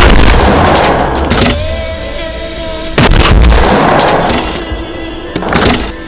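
Firecrackers going off inside a washing machine: a loud blast at the start that trails off over about a second and a half, a second loud blast about three seconds in, and a shorter one near the end.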